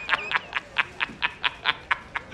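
A man laughing in a quick, even run of 'ha' pulses, about four or five a second.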